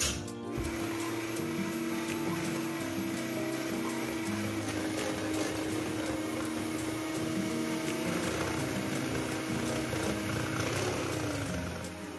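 Electric hand mixer running steadily with its beaters whisking a thin mixture in a ceramic bowl; its motor whine drops in pitch near the end as it winds down. Background music plays along with it.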